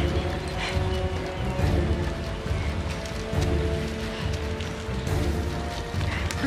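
Tense background music: held notes over a pulsing low beat.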